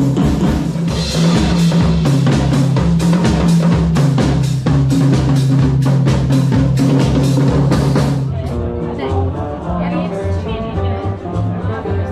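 A live band playing with a drum kit: fast, busy drumming over steady sustained bass notes. About two-thirds of the way through, the drumming drops away and a softer, more melodic passage of music takes over.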